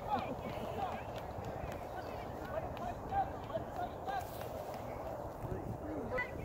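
Faint, distant voices of people calling across an open playing field, over a low steady rumble.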